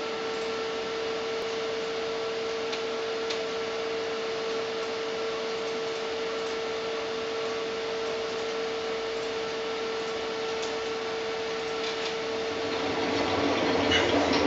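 Steady electrical hiss with a constant mid-pitched hum tone from the room's electronics; in the last second or so the level swells as the backing music starts to come in.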